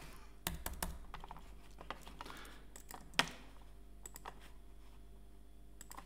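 Faint, scattered clicks and taps of a computer keyboard in a quiet room: a few quick ones about half a second in, a louder single click around three seconds, and a couple more near the end.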